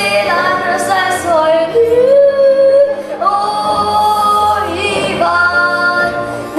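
A young girl singing a Slovene song in a high voice, holding long notes that slide down and up between pitches, with a short breath about halfway through.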